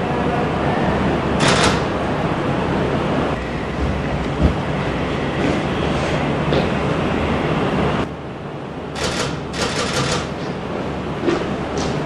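Press camera shutters clicking over steady room noise, with one short group of clicks about a second and a half in and a rapid cluster near the end.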